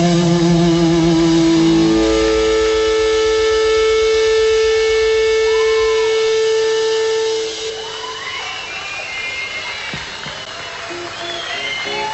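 Live rock band music: long held notes ring loud until about two-thirds of the way through, then the music drops in level to wavering, sliding tones, and a short repeating note figure begins near the end.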